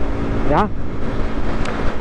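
Aprilia RS 125's single-cylinder four-stroke engine running at a steady cruising speed, a constant hum over rushing road and wind noise. A short spoken "ja" about half a second in.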